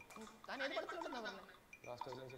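Brief speech from a single voice, starting about half a second in and lasting under a second, with quieter gaps before and after.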